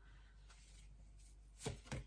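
Near-silent room tone, then two soft taps near the end from oracle cards being handled on the table.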